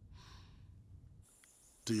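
A short breathy sigh, about half a second long, just after the start, over a low steady hum. A man begins speaking right at the end.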